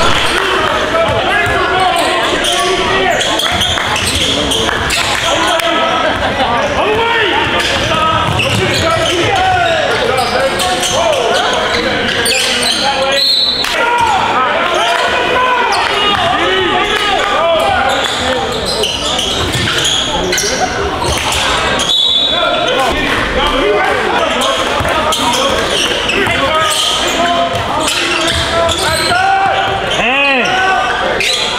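Basketball game in a gym: a basketball bouncing on the hardwood court, with the voices of players and spectators echoing in the hall.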